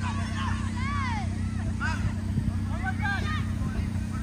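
Children's voices shouting and calling across the pitch in short, high-pitched calls, over a steady low rumble.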